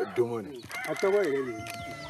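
A rooster crowing once: a long, drawn-out call that starts a little under a second in and falls slightly in pitch at the end, over men talking.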